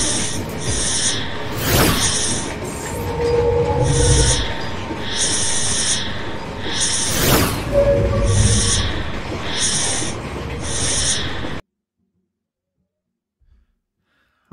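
Intro-animation music: a repeating electronic beat of hissy percussion hits, with whooshing sweeps about 2 and 7 seconds in. It cuts off abruptly a couple of seconds before the end, leaving silence.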